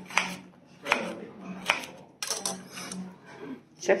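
Kitchen knife slicing a cucumber on a plastic cutting board: a handful of short, sharp knocks as the blade meets the board, spaced roughly a second or less apart.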